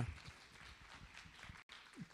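A man's footsteps as he walks across a hall floor, faint under room noise. The tail of a spoken "okay" is heard at the very start.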